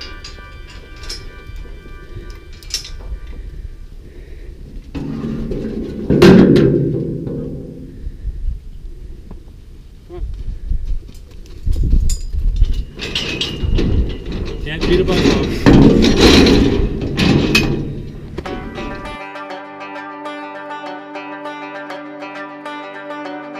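Steel livestock gates and pipe panels clanking and banging as cows are moved through a sorting pen. The loudest bang comes about six seconds in, and a run of clangs follows later on. Music comes in near the end.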